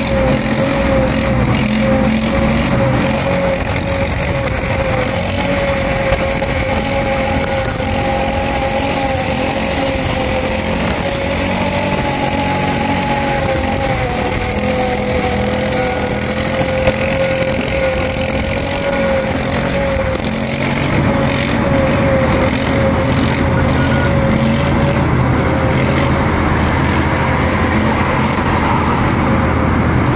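Steady road and engine noise heard from inside a car moving at motorway speed, with a droning hum that wavers slightly in pitch.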